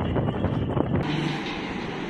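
Wind buffeting an outdoor microphone, a heavy low rumble. About a second in it cuts off abruptly to a quieter, steady hiss of room noise.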